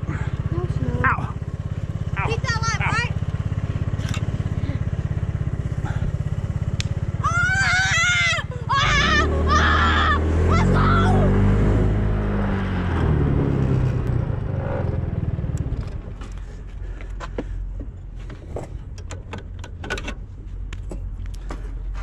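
A small motorbike engine idling steadily, then revving up about nine seconds in as the bike pulls away, its pitch climbing for several seconds before it drops back to a quieter, lower running sound.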